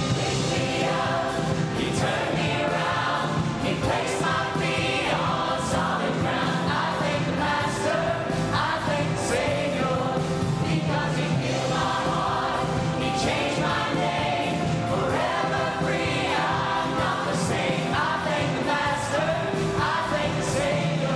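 Church choir singing a slow gospel song with musical accompaniment, sustained and unbroken.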